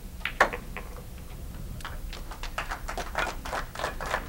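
A pool cue tip striking the cue ball with one sharp click about half a second in, followed later by a scatter of fainter clicks and taps of pool balls striking and rolling on the table. The shot is a cut played with inside English that pockets the object ball.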